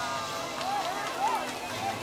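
High-pitched voices of onlookers making short rising-and-falling calls, over the steady hiss of the fountain's water jets.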